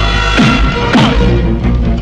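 Film action background score with sustained notes, broken by two sudden hits about half a second and a second in, each with a falling swoop.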